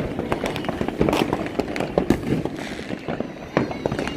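Fireworks going off: a dense, irregular run of sharp bangs and pops from many shells at once.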